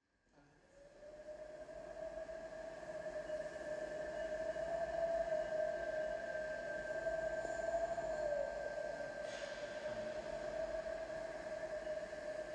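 Soft sustained synth-pad drone fading in about a second in, holding two steady notes as the opening of a song.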